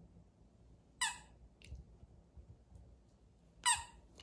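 Squeaker in a plush bone-shaped dog toy squeaking twice as a Jindo dog bites it: one short, high squeak about a second in and another near the end.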